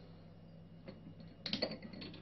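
Plastic electrolysis electrode units clicking and knocking against drinking glasses as they are set into the water: one small click about a second in, then a quick cluster of clicks and knocks near the end, over a faint low hum.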